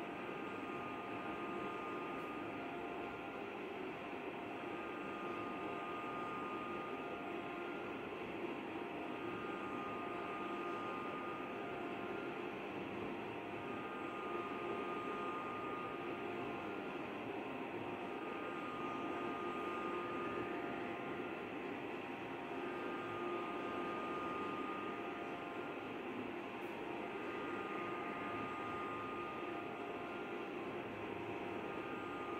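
Steady background hiss and hum, with faint steady tones that come and go every few seconds.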